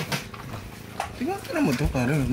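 Speech: a man's voice saying "I love you, man" in a drawn-out, wavering tone, starting about a second in.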